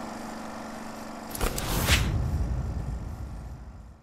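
Logo-sting transition sound effect: a steady drone, then a rising whoosh with a low rumble that peaks about two seconds in and fades away.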